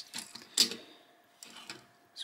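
Die-cast Matchbox toy cars being set down and nudged into place on a wooden tabletop: a few light clicks and knocks, the sharpest just over half a second in.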